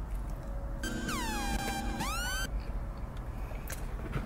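Electronic sound effect: a cluster of tones gliding down in pitch and then sweeping back up, about a second and a half long, starting about a second in.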